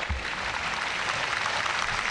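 A large audience clapping steadily.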